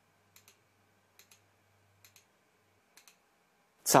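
Faint double clicks, four pairs about a second apart, from the buttons of the pointer device used to work the editing system's menus. A faint low hum sits underneath.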